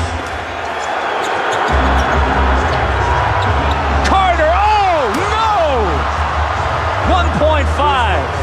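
Basketball arena crowd noise during a tied game's final seconds, swelling with a deep rumble about two seconds in, while sneakers squeak sharply on the hardwood court in a flurry around four to six seconds in and again near the end.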